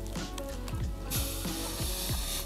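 Background music with a beat, over the crunch of a bite into a crisp fried birria taco and chewing, with a noisier crunchy patch about a second in.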